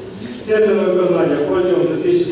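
Speech: a man talking, starting about half a second in after a brief pause.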